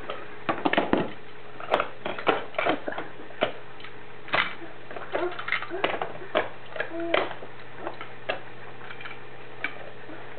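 Irregular clicks and clacks of small toy cars and hard plastic toys being picked up and knocked together.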